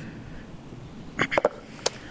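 Faint steady background noise, then a single short, sharp knock near the end as the metal tin of underbody seal is set down on the tarmac.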